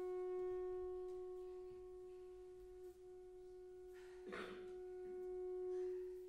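A single long held note on one steady pitch, without vibrato, swelling and easing in loudness, from the performance's live ensemble. A brief soft noise cuts in about four seconds in.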